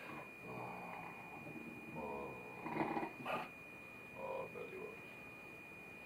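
Dog making about four short whining, grumbling vocalizations, typical of a hound fussing playfully for attention.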